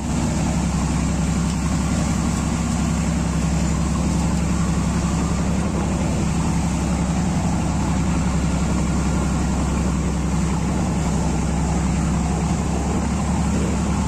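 Pilot boat's engine running steadily with a low, even hum, under a wash of water and wind noise.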